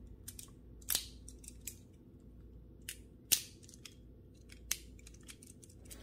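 Plastic LEGO Technic pins clicking as they are pressed into the holes of Technic beams: several sharp clicks, the loudest about halfway, amid soft rustling of handled plastic parts.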